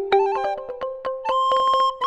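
Instrumental music: a quick melody of short, sharply struck notes stepping up and down, with a higher note held near the end.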